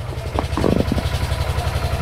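An engine idling with a steady, even pulse, and a short separate sound about half a second in.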